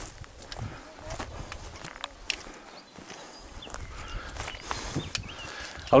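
Hiker's footsteps on grassy, stony mountain ground: irregular scuffs and sharp clicks on rock, some of them louder taps about two seconds in and near the end.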